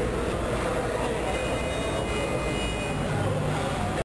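Indistinct voices murmuring over a steady low rumble and hiss.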